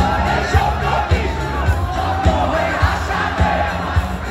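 Rock band playing live, with a kick drum beating steadily a little under twice a second under a loud crowd singing along.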